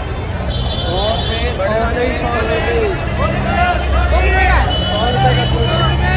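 Crowd babble of a busy outdoor market: many overlapping voices of shoppers and vendors, none clear, over a steady low rumble of traffic.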